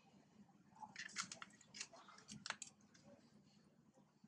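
Long-tailed macaques chewing and smacking while grooming: a run of faint, short clicks and smacks from about a second in until near three seconds, in an otherwise near-silent background.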